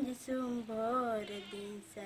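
A young woman singing solo and unaccompanied, holding long notes whose pitch wavers and bends, with short breaths between phrases.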